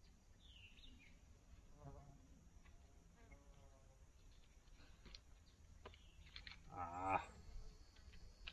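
Faint scattered clicks and small rattles of tree-climbing gear (tether strap, buckles and metal hardware) being handled and adjusted, with a short voice-like sound about seven seconds in.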